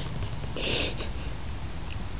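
A person sniffing once through the nose, a short hissy intake about half a second in, over a steady low background rumble.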